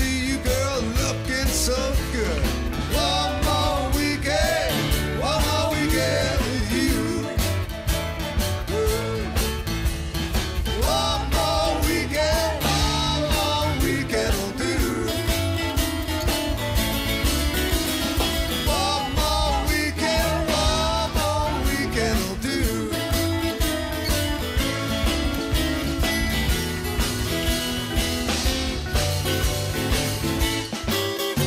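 A live rock band playing an instrumental passage: a steady drum beat and bass under guitars, with a lead melody line that bends in pitch.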